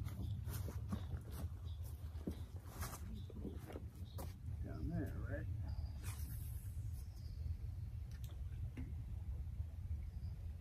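Steady low rumble with scattered clicks and knocks from footsteps and fishing gear on riverbank rocks, and a short warbling pitched sound about five seconds in.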